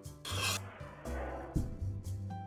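A steel chef's knife blade scraping across a wooden cutting board as it pushes chopped tomato together, one short rasp near the start, over background music.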